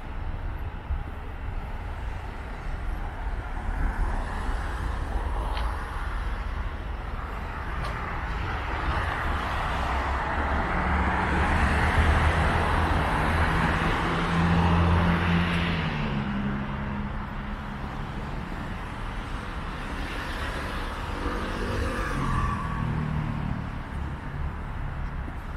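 Road traffic: a passing vehicle's tyre and engine noise swells to a peak about halfway through and fades. A second engine comes through near the end.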